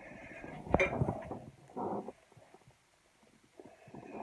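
Close-up handling noise with one sharp click about a second in, then a short muffled burst near the middle: a chocolate heart being bitten into and chewed right by the microphone.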